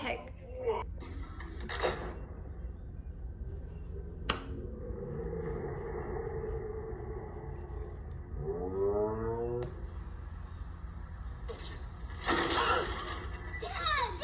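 Soundtrack of short amateur video clips played back: a muffled, dull-sounding stretch with a sharp click about four seconds in and a voice rising in pitch near the middle, then a clearer clip with voices talking near the end. A woman's laughter is heard briefly at the start.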